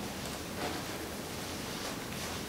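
Faint rustling and handling of a black leather thigh-high boot as it is adjusted at the ankle, with one soft brush about half a second in.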